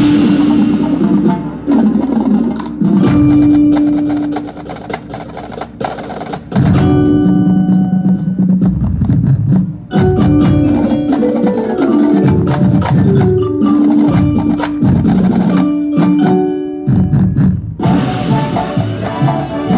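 Live high school marching band playing its field show: held brass chords punctuated by sharp percussion hits, with the front ensemble's marimbas and other mallet percussion sounding through.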